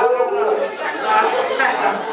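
Chatter of several people talking at once.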